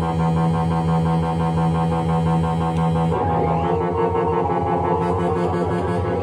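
Erica Synths Black System III Eurorack modular synthesizer played from a MIDI keyboard: a thick, buzzy multi-oscillator tone over a fast pulsing bass. The pitch changes about three seconds in, with short rising sweeps.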